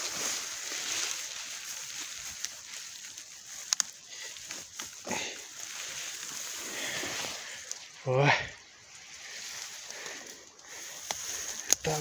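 Dry grass and stems rustling and crackling as porcini mushrooms are picked by hand, with scattered sharp snaps. A short voiced exclamation comes about eight seconds in.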